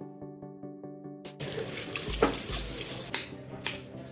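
Background music, then from about a second and a half in, water running from a kitchen tap into a basin in a stainless steel sink, heard over the music.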